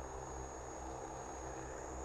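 Faint steady hum of a DJI Agras T20 sprayer drone's rotors in flight, with a thin steady high whine above it.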